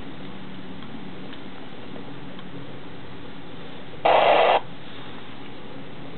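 Radio transceiver giving a steady low hiss, then about four seconds in a loud burst of static lasting about half a second.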